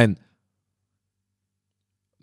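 A man's narrating voice trails off at the end of a word in the first moment, then silence.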